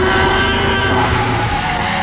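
Tyrannosaurus rex roar from the film's soundtrack: one long, loud, rasping animal call that eases off near the end.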